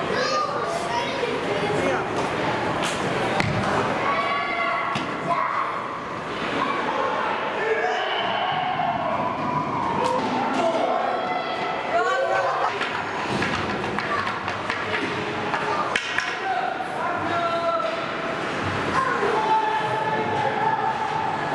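Ice hockey rink sounds: indistinct shouting voices mixed with repeated thuds and slams of pucks and players hitting the boards, in a large reverberant arena.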